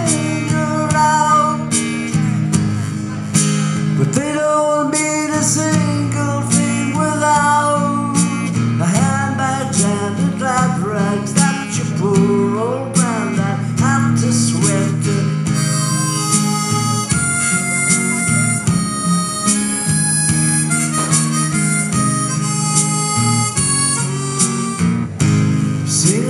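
Harmonica solo played from a neck rack over a strummed acoustic guitar, an instrumental break between sung verses. The harmonica notes bend and waver, and they turn brighter and more sustained in the second half.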